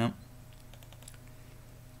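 Faint, scattered clicks of a computer keyboard and mouse, a few light taps over a low steady background.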